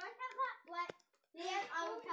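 Children's excited exclamations, with a single sharp click a little under a second in.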